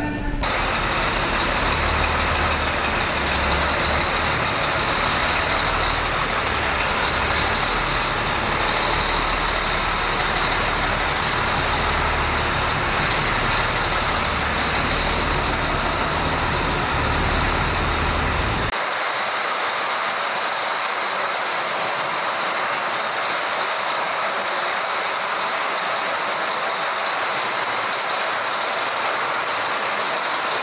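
Steady running noise of a heavy military truck's engine. A deep low rumble drops away suddenly about two-thirds of the way through, leaving a steady hiss-like noise.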